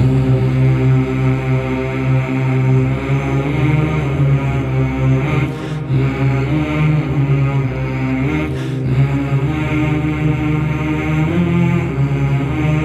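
Background music: a chant sung over a steady low drone.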